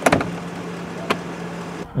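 Bentley Mulsanne soft-close door pulling itself shut: a click at the start, then a low, steady electric hum for about a second and a half, with a sharp click about a second in.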